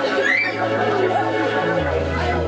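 A person's high, wavering vocal cry over steady low keyboard notes, which shift to a new note near the end.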